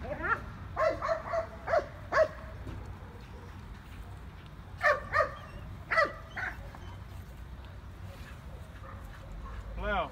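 A dog giving short, high-pitched yips and whines in two bursts: several in the first two seconds and a few more about five to six and a half seconds in.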